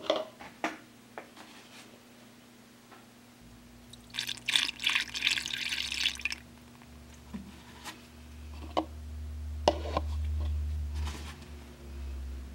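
Distilled water poured through a plastic funnel into a cell of a flooded lead-acid battery, topping the water up over the plates: a rush of splashing about four seconds in, with scattered clicks and drips before and after. A low hum swells near the end.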